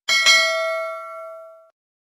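Notification-bell 'ding' sound effect of a subscribe-button animation, set off as the cursor clicks the bell icon. Two quick bell strikes ring on together and fade out about a second and a half in.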